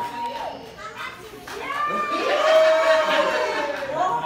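Several children's voices talking and calling out over one another, quieter at first and growing louder about halfway through.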